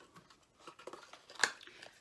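Quiet handling of a small makeup bottle: faint rustles and light ticks, with one sharp click about a second and a half in.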